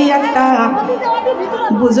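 A woman's voice preaching a sermon in Bengali, delivered continuously in a half-sung, chanting manner with some long held notes.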